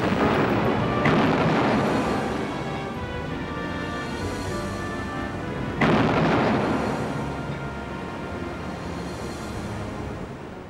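Heavy naval gunfire from battleship main guns: a salvo booms at the start, again about a second in, and once more near six seconds in, each rumbling away slowly. Background music with sustained tones runs underneath.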